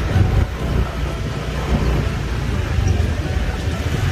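Steady low rumble of city street traffic on a wet road.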